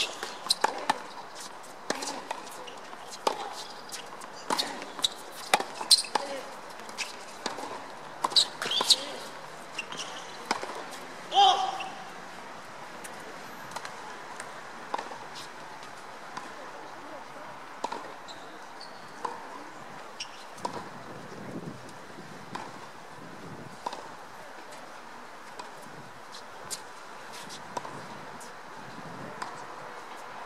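Tennis ball struck by rackets and bouncing on a hard court during a rally, a sharp hit about every second for the first twelve seconds or so. A brief shout comes near the end of the rally, then only occasional ball bounces.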